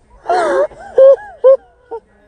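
A girl's voice moaning and crying out: one longer wail, then several short cries that rise and fall in pitch.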